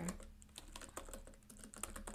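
Typing on a computer keyboard: a faint, uneven run of keystrokes, several a second.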